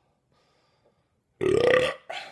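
A man's loud belch, about half a second long, starting about one and a half seconds in, its pitch rising slightly toward the end.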